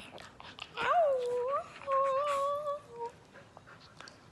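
A dog whining and howling in three drawn-out calls during play: the first bends up and down, the second is held level, and the third is short. Light clicks and rustles of the dog mouthing a hand come before the calls.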